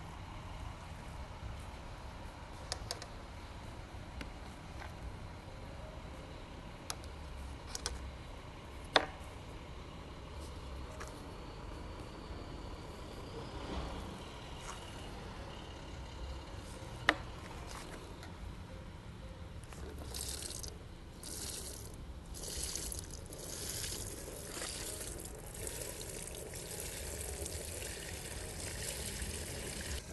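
Liquid pouring from the bung hole of an oak whisky barrel and splashing through a metal sieve into a plastic tub, growing louder and splashier in the last third. Two sharp knocks come earlier.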